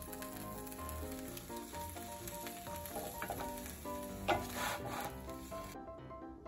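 Steak, peppers and cheese on hoagie rolls sizzling in a frying pan as a wooden spatula works them, with a louder burst of sizzle about four seconds in. The sizzling cuts off just before the end, under background music.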